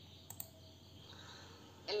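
Two quick clicks close together about a third of a second in, over a faint steady hiss of room tone; a woman's voice starts right at the end.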